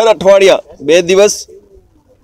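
A man speaking: two short spoken phrases, then a pause.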